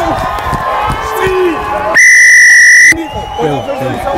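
Rugby referee's whistle blown once in a single steady blast of about a second, halfway through, the loudest sound here, over commentary and light crowd noise.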